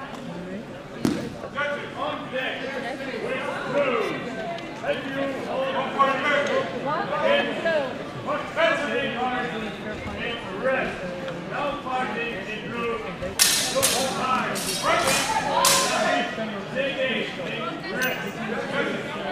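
Indistinct chatter of several voices in a large hall, with a few sharp clicks or knocks, several of them close together about three-quarters of the way through.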